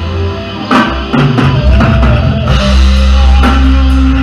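Live rock band: an electric guitar solo over bass guitar and a drum kit, with the lead line bending notes up and down and drum and cymbal hits cutting through.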